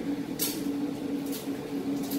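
A steady low machine hum from running equipment, with two short, soft brushing noises about half a second and a second and a half in.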